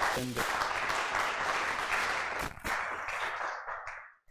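Audience applauding at the end of a talk, dying away near the end, with a man's voice briefly over the start.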